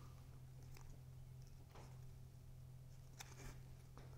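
Near silence: room tone with a steady low hum, and a few faint ticks and rustles of cardstock pieces being handled and lined up.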